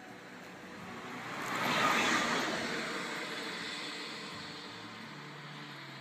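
A vehicle driving past close by: its noise swells to a peak about two seconds in, then fades away slowly over the next few seconds.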